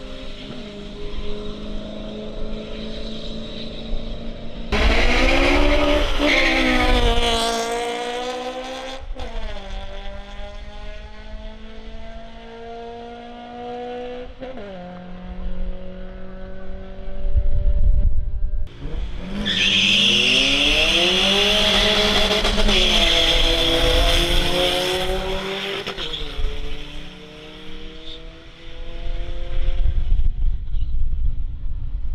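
Street-legal cars drag racing, their engines revving hard and shifting up through the gears, the pitch climbing and dropping again with each shift. There are several loud runs, and the sound breaks off and changes abruptly a few times.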